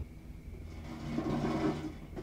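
Film soundtrack: a steady low rumble, with a rush of noise that swells about a second in and then fades.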